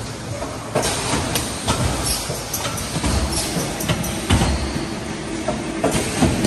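A cup filling and sealing machine on a dairy packaging line running, a steady mechanical clatter with repeated knocks and clicks at uneven intervals of roughly half a second to a second.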